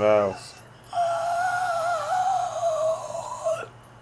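A zombie's wail from the series: one long, slightly wavering, high cry held at a single pitch for about two and a half seconds, starting about a second in and cutting off sharply. It is preceded at the very start by a brief vocal sound that falls in pitch.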